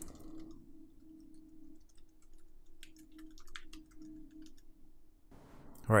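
Typing on a computer keyboard: a loose scatter of light key clicks through the middle seconds, over a faint steady hum.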